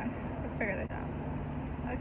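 Steady low rumble of a car's engine and road noise heard inside the cabin, with a brief soft voice fragment about half a second in.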